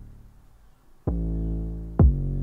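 Playback of a trap beat: a long 808 bass note fades out, a new 808 note comes in about a second in, and a kick drum hits right at the end. The 808 is far louder than the kick, overshadowing it in the mix.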